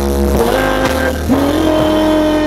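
Live band music amplified over a PA: a held melody line sliding between notes over a steady bass.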